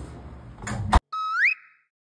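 An apartment front door being pushed open and pulled shut, ending in a sharp latch click about a second in. The sound then cuts out and a short electronic sound effect slides up in pitch and holds briefly.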